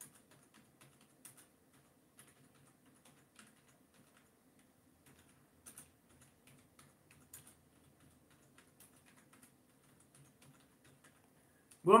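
Faint, irregular keyboard typing: scattered light key clicks with uneven pauses between them. A man's voice starts right at the end.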